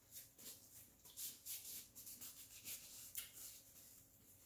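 Near silence, with faint scattered soft rustles and small clicks, like hands working a paper napkin.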